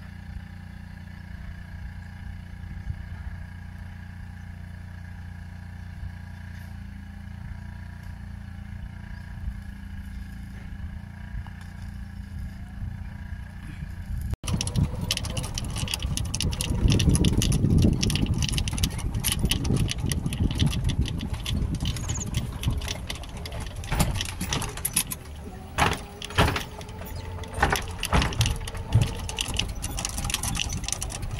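A steady low hum for about the first half. Then, after a cut, a golf cart riding along a paved cart path: a low rumble with wind on the microphone and frequent short rattles and knocks.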